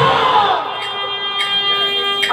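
A man's loud, drawn-out battle cry with a wavering pitch, settling about half a second in into a steady held note.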